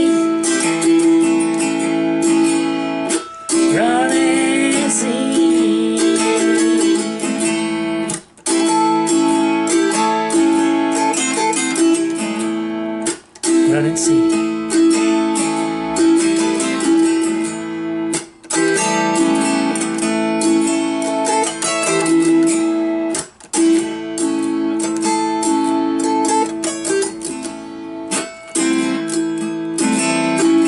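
Autoharp played solo, its strings strummed and picked in ringing chords. The sound breaks off briefly about every five seconds.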